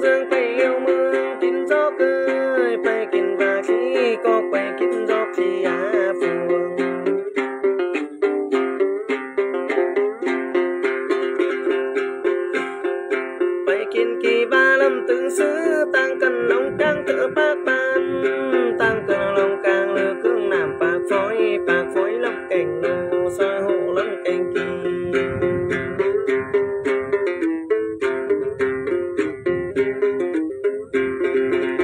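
Đàn tính, the Tày-Nùng long-necked gourd lute, played in a quick, steady stream of plucked notes as Then ritual music.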